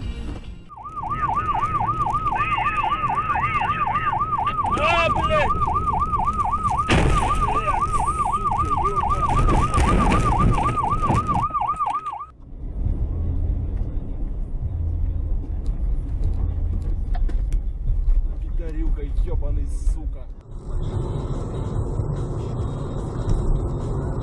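Electronic siren warbling rapidly up and down, about three to four sweeps a second. It cuts off suddenly about halfway through, leaving only a car's engine and road rumble.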